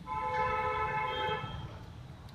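A vehicle horn sounds once, a steady two-tone blare lasting about a second and a half.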